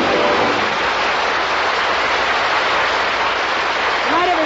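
Studio audience applauding, a dense steady clatter of clapping, as the last held note of the song fades out in the first half second.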